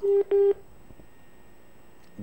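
Two short, identical telephone beeps on a phone-in call line. Each is a single steady pitch about a fifth of a second long, and they come about a third of a second apart right at the start.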